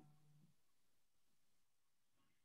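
Near silence, with one faint short blip right at the start.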